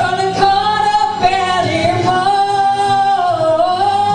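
A woman singing long held notes into a handheld microphone through a PA, over backing music; the held pitch dips briefly near the end.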